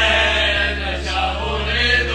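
A group of men singing loudly together over music with a steady low bass.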